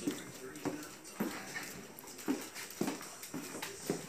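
Footsteps on a hardwood hallway floor, short knocks about twice a second.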